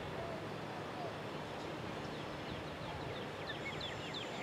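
Steady outdoor background of river water and distant traffic, with a small bird singing a quick run of short, high, down-slurred notes from about two seconds in.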